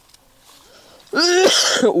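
A man coughs harshly and clears his throat about a second in, after a quiet moment. He puts it down to the walking bringing on his cough and asthma.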